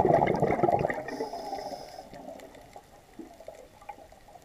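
A scuba diver's exhaled bubbles crackling and gurgling out of the regulator, loudest at the start and dying away over the first two seconds. A faint high hiss follows about a second in.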